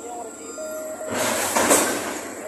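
Container-terminal crane machinery working cargo: a few short, steady pitched tones, then a loud rushing, clattering noise lasting under a second just past halfway, loudest near the end.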